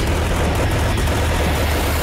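Loud, dense trailer sound mix: a steady roar across the whole range with a heavy low rumble underneath.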